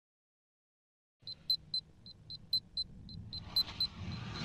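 Rapid, high-pitched electronic beeps, about four a second, start a second in over a low rumble. The rumble builds near the end as a Russian Proton rocket's engines ignite on the launch pad.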